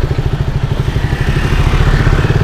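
KTM Duke 200's single-cylinder engine running steadily with a rapid, even beat as the bike rolls slowly.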